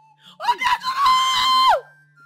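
A woman's high-pitched scream, rising at first, held level for about a second, then falling away.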